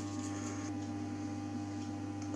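Ferroresonant (constant-voltage) transformer humming steadily under load, a low hum with higher overtones.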